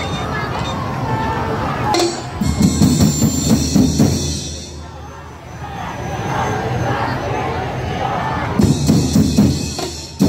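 A festival drum band of snare, tom and bass drums playing two loud bursts of drumming, about two and a half seconds in and again near the end. Voices and music fill the stretch between the bursts.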